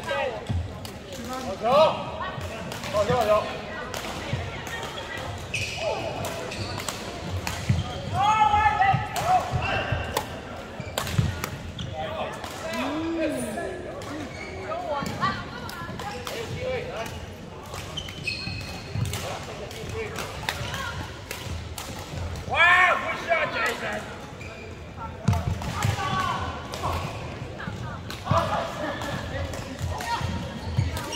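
Doubles badminton rallies in a large indoor hall: repeated sharp racket strikes on the shuttlecock and quick footwork on the court, with a few short shoe squeaks and voices echoing in the hall.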